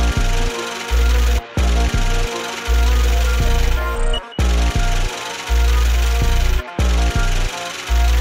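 Trap beat playing back at 164 BPM: heavy 808 bass notes with short pitch glides under a synth melody and drums. The whole beat drops out briefly three times, about every two to three seconds.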